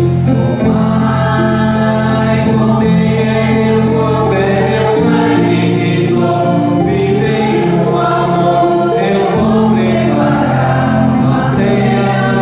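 Church hymn sung by a choir over sustained instrumental chords, with a light, steady beat.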